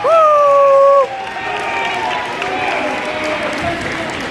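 A spectator's loud, held shout lasting about a second, then crowd applause and cheering for a wrestling pin.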